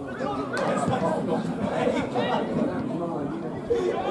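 Several voices calling and talking over one another: footballers shouting to each other on the pitch, with spectators chattering.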